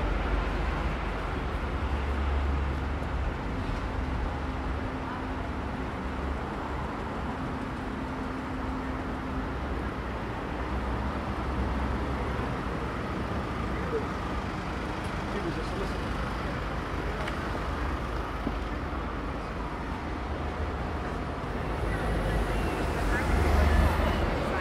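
Busy city street traffic: cars, taxis and double-decker buses running past with a steady engine rumble, and passers-by talking. A bus passing close makes it louder near the end.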